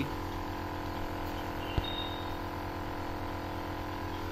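Omron NE-C302 compressor nebulizer running: a steady mechanical hum from its air compressor, with one light click a little under two seconds in.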